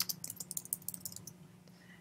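Typing on a computer keyboard: a quick run of key clicks that thins out and stops about a second and a half in.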